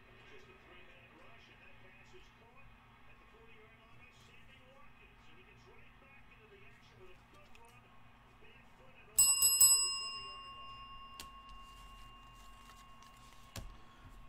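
A small metal bell struck a few times in quick succession about nine seconds in, then ringing out with a bright, clear tone that fades over several seconds. Before it there is only faint room noise.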